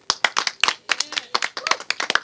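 A few people clapping their hands: separate, sharp, uneven claps several times a second, applause starting right as the song ends.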